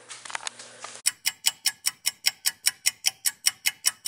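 Fast, evenly spaced ticking like a clock, about six sharp ticks a second, starting about a second in, with a few faint clicks before it.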